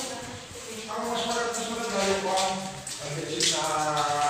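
Voices talking indistinctly, heard from about a second in and again near the end.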